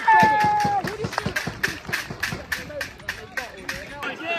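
A drawn-out shout, then a quick run of sharp slaps, about five a second, over a background of voices.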